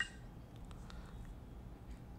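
A short electronic shutter click from the Nextbit Robin's camera app right at the start, followed by quiet room tone with a few faint ticks.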